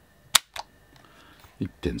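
The hammer of a Tokyo Marui Detonics .45 gas-blowback airsoft pistol snaps down once in a sharp click, followed by a fainter click, as the trigger breaks on a trigger-pull gauge at about 1 kg.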